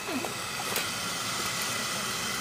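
Steady outdoor background noise with faint steady high-pitched tones running through it.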